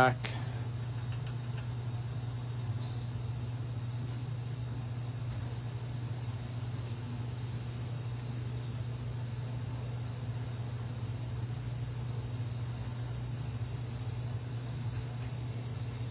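Steady low electrical or fan-like hum over a faint room hiss, unchanging throughout.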